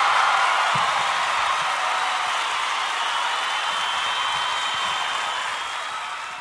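A crowd applauding and cheering, an even rush of clapping that slowly fades toward the end.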